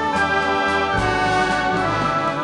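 Concert band playing, with brass prominent, under a woman's held, wavering sung notes with no words.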